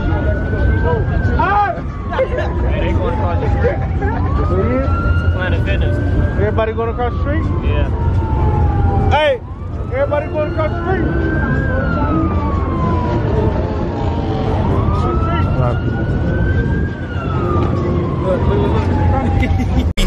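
Police car siren wailing: each cycle rises quickly and then falls slowly, four times about every five seconds. Underneath are crowd voices and a steady low rumble.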